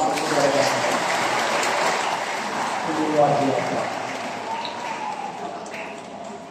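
Congregation applauding together, the clapping slowly dying away over the last couple of seconds.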